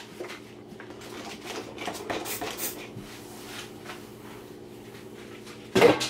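Kitchen handling sounds: light clicks and rustles as groceries and containers are moved about on a countertop, with one louder knock of something set down near the end, over a faint steady hum.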